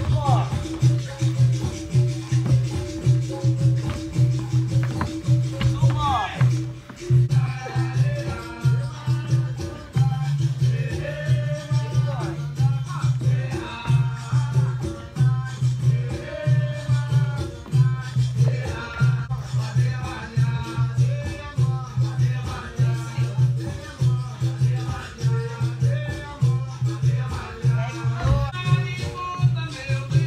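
Rhythmic Latin-style music with a shaker and a steady, evenly pulsed low drum beat; a voice sings over it from about seven seconds in.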